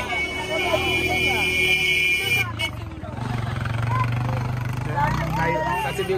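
A vehicle engine running close by: a low steady hum that sets in about two seconds in, swells, then stops near the end, under market crowd chatter. A high steady whine sounds for the first two seconds and cuts off abruptly.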